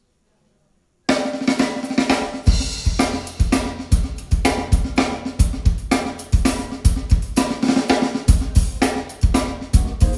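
After about a second of near silence, a jazz quartet of violin, electric guitar, keyboard and drum kit starts together abruptly, launching into a tune in 11/8 time. The drum kit is prominent, with regular kick-drum hits, snare and cymbals.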